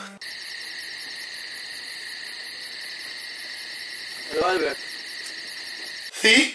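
Smartphone ringing with a cricket-chirp ringtone: a steady, high chirping that pulses about five times a second and cuts off suddenly as the call is answered. A short vocal sound breaks in about four and a half seconds in.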